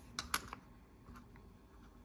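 Light clicks of small metal coins, British sixpences, being set down and handled among others on a table: three quick clicks close together in the first half-second, then two fainter ticks a little after a second in.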